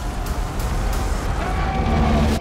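Loud dramatic trailer music mixed with the low rumble of a semi-truck on an ice road, with a few sharp impact hits. It grows slightly louder toward the end.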